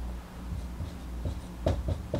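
Marker writing on a whiteboard: faint rubbing strokes, with a few short taps near the end, over a low steady hum.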